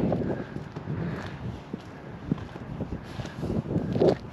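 Footsteps and scuffs on an asphalt-shingle roof, a run of irregular soft knocks, with wind rumbling on the microphone.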